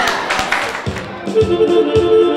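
A few people clapping, then a live band starts up about a second in: electronic keyboard chords over a low, steady beat at about two beats a second.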